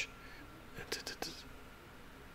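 A man's whispered mouth sounds: a few short "ch" hisses and clicks about a second in.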